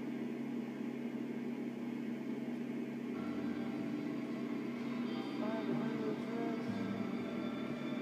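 A steady low hum, with faint music coming in about three seconds in.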